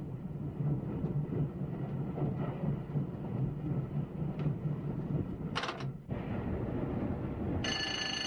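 Steady low rumble of an electric multiple unit's wheels on the rails, heard from the driving cab as the train coasts with power shut off. Near the end a short bell-like ring sounds.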